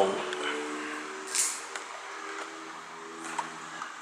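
A low voice humming sustained notes, shifting pitch a couple of times. A short crackle of the clear plastic blister tray of figure parts comes about a second and a half in.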